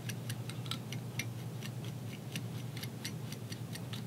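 Bodkin raking through the Estaz chenille body of a fly: a run of faint, irregular light ticks and scratches over a steady low hum.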